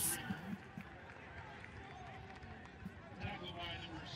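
Faint stadium ambience from a TV football broadcast: a low, even crowd murmur with faint distant voices near the end.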